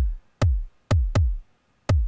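Electronic kick-drum sample from the JR Hexatone Pro sequencer app playing a syncopated pattern: about five hits in two seconds at uneven spacing, each a sharp click over a low thud that falls in pitch.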